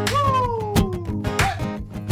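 A cat gives one long meow that falls in pitch over about a second, over background acoustic guitar music.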